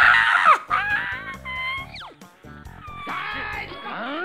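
A man's loud, drawn-out wordless shouts and wavering cries over background music, loudest in a long cry at the start, with a falling-pitch yell about two seconds in.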